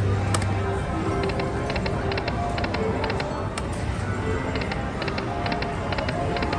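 Dragon Link video slot machine spinning its reels, playing short electronic notes and repeated chimes as the reels spin and stop, over steady casino background noise.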